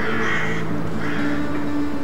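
Two harsh, caw-like bird calls, one at the start and one about a second later, over soft acoustic guitar music.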